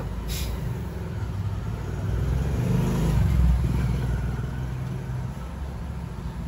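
Low engine rumble of a passing road vehicle, swelling about three seconds in and then fading, after a sharp click right at the start.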